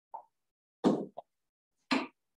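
A few short, sharp knocks and pops close to the microphone, two of them loud: one a little under a second in and one near the end. A brief spoken "yeah" comes in among them.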